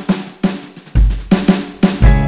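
Drum kit intro fill from a BeatBuddy drum pedal: quick snare strokes with a heavy kick drum hit about halfway through.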